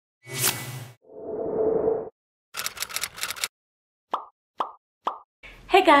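A string of short synthesized intro sound effects, ending with three quick plops about half a second apart.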